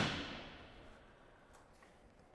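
The fading echo of a 5.56 mm M855 rifle shot fired into an AR500 steel plate in an indoor test lab. The echo dies away within about a second, leaving near quiet.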